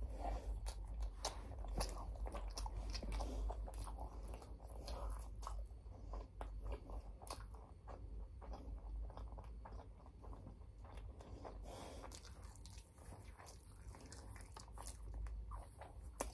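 A person chewing a mouthful of sauced, battered General Tso's chicken close to the microphone: soft, irregular wet mouth clicks and crunches, busiest in the first half and thinning toward the end.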